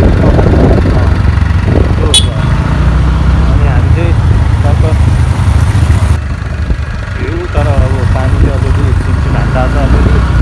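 Motorcycle engine running with a steady low drone while riding, and a single sharp click about two seconds in.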